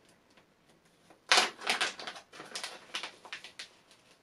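Plastic zip-lock packet of synthetic glitz dubbing crinkling and rustling as fibres are pulled from it by hand: an irregular run of short, scratchy rustles starting a little over a second in, the first one the loudest.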